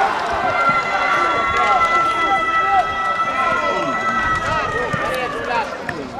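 Footballers shouting and calling to each other during play, several voices overlapping in short calls, with one or two longer held shouts in the first few seconds.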